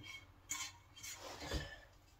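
Spatula scraping a sticky peanut butter and cornflake mixture out of a nonstick skillet into a glass baking dish: faint short scrapes, with a soft knock about one and a half seconds in.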